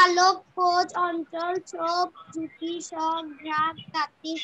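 A child singing in a sing-song line, each syllable held on a steady note in an even rhythm.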